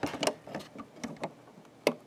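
Hard plastic Lego pieces clicking under fingers as the model is handled, a few separate light clicks with a sharper one near the end.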